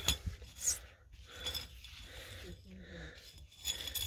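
Gloved fingers scraping and rubbing gritty ash and soil off a half-buried glass wine bottle, an irregular soft rasping with a sharp knock at the very start.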